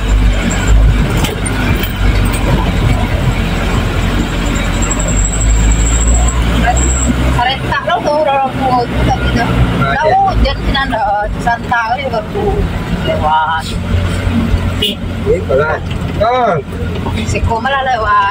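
Truck engine running, heard from inside the cab as a steady low rumble while the truck crawls along a rough dirt track. From about seven seconds in, voices talk over it.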